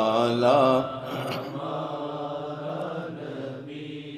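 A man's voice chanting a line of an Urdu naat, unaccompanied, trailing off about a second in. A softer steady hum of held low tones carries on under the pause.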